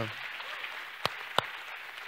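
Congregation applauding lightly, with two sharp clicks about a second in.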